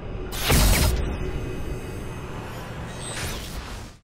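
Sound effects of an animated logo sting: a loud whoosh and hit about half a second in, fading away, then a lighter swish near the end before the sound cuts off suddenly.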